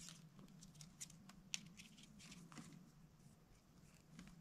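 Faint handling noise of fishing line being threaded through the eye of a hook by fingers: a few soft ticks and rustles, the sharpest about one and a half seconds in, over a low steady hum.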